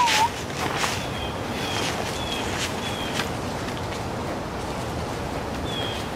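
Steady rustle of footsteps through dry fallen leaves. A bird gives a series of short chirps, five or six times.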